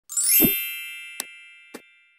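Logo-intro sound effect: a bright, many-toned chime that sweeps quickly upward and then rings on, slowly fading. Two short clicks come about a second and a second and three quarters in, fitting the click of an animated subscribe button and notification bell.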